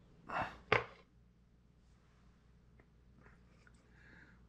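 A short scrape, then a sharp click under a second in, followed by a few faint small ticks: handling noise as the clay head on its rod is taken off and set into a drill-chuck holder.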